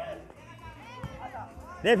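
Faint voices and chatter of spectators over quiet background music, with a man's voice starting loudly near the end.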